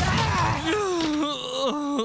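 A cartoon character's long, drawn-out wailing cry. Its pitch falls at first, holds steady, rises briefly and then slides down sharply near the end.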